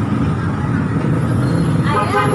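Steady low rumble of background road traffic, with a voice starting right at the end.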